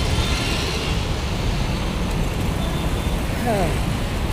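Busy road traffic: a steady rumble of passing cars and motorbikes.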